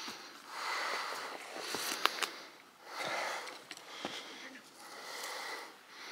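A hiker breathing hard through the nose and mouth on a steep uphill climb, with several separate breaths about a second apart. A couple of sharp clicks about two seconds in.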